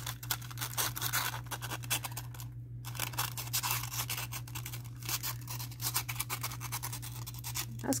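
Waxed paper crinkling and crackling as it is handled and pressed down onto a paper napkin, with a brief pause a couple of seconds in. A steady low hum runs underneath.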